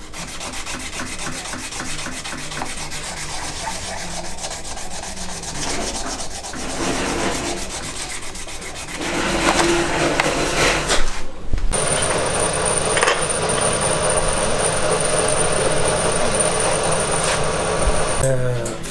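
A pipe stem being hand-filed, with quick scraping strokes. After a short break a steadier machine noise with a constant high whine takes over near the end.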